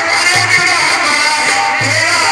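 Qawwali music from a Sufi sama gathering: a harmonium melody over deep hand-drum strokes, two of them heavy bass beats about a second and a half apart.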